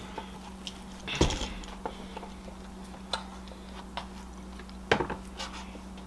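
A fork tapping and clinking against a plate while cutting pancakes: a few scattered light ticks, with a louder knock about a second in and another near five seconds.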